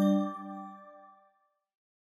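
Closing chord of a chime-like intro jingle: several bell-like notes struck together, ringing and dying away about a second and a half in.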